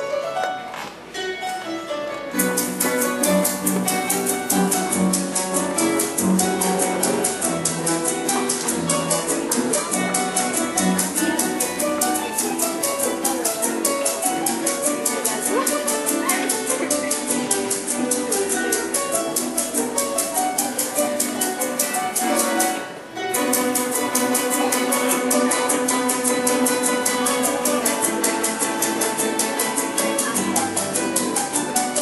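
Llanero harp (arpa llanera) playing a fast joropo-style melody, alone at first. About two seconds in, maracas join with a rapid, even shaking rhythm, together with a strummed cuatro. The maracas drop out briefly about three-quarters of the way through, then resume.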